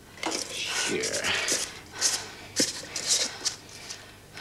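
A person's voice making wordless sounds, one gliding vocal sound about a second in, among several short breathy noises.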